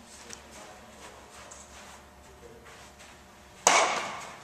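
A baseball smacking into a leather glove once, sharp and loud, about three and a half seconds in, with a short echo from the large indoor room.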